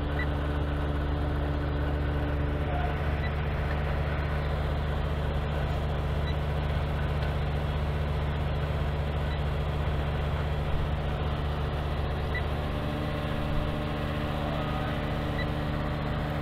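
Air conditioner outdoor unit running: a steady, even hum from the compressor and condenser fan.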